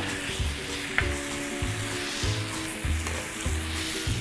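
Minced pork and fermented fish paste (prahok) frying with a steady sizzle in a nonstick pan while a spatula stirs and scrapes it, with one sharp click about a second in. Soft background music with a slow low beat runs underneath.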